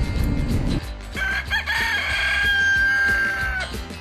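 Rooster crowing once: a long crow starting about a second in, breaking at first and then holding a steady final note for about two seconds.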